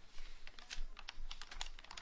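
A quick, irregular run of many small, sharp clicks and taps.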